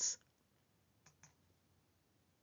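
The tail of a spoken word, then near silence broken by two faint short clicks about a fifth of a second apart, a little over a second in.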